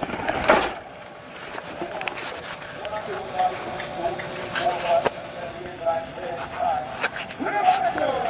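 Faint distant voices over outdoor street ambience, with a brief rush of noise about half a second in.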